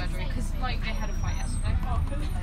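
Steady low drone of a 2011 VDL Bova Futura coach's engine and running gear, heard from inside the cabin while it drives, with passengers' voices over it.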